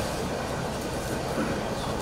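Steady room noise: an even hum and hiss with no distinct events, in a pause between speakers.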